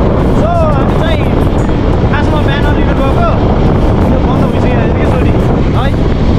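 Steady wind rush on the microphone of a moving motorcycle, with road and engine noise underneath. Short snatches of voice break through now and then.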